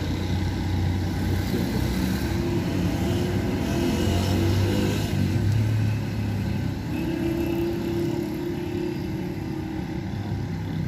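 Street traffic: engines of passing motor vehicles running continuously, loudest around the middle.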